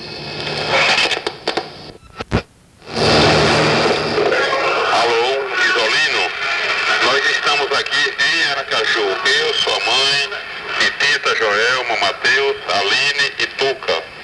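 A person's voice on recorded telephone answering-machine messages, broken about two seconds in by a sharp click and a short pause before the voice resumes.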